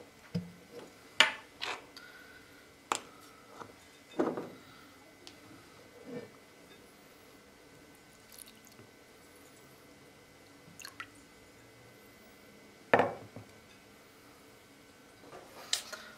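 Homemade liqueur being strained through gauze in a plastic funnel into a glass bottle: faint pouring and dripping, broken by a dozen or so short sharp clinks and knocks of glass and kitchenware, the loudest about a second in and again near the end.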